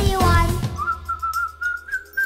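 Cheerful music stops under a second in and a single whistled note takes over, sliding up into place and then wavering as it holds for over a second.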